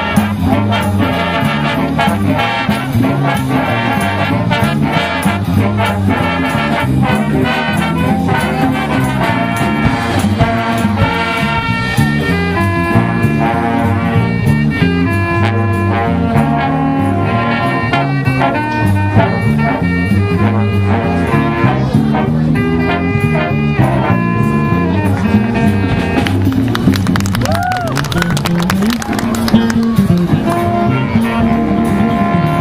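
High school big band playing a swing-style jazz tune live: saxophones, trumpets and trombones over a drum kit, with a low line stepping from note to note under a steady beat.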